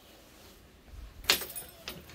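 Glazed side door being pulled shut: a low thud about a second in, then a sharp latch clack, and a smaller click near the end.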